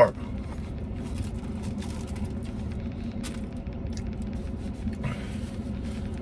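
Steady low rumble inside a parked pickup truck's cab, the sound of the vehicle idling, with no sharp events.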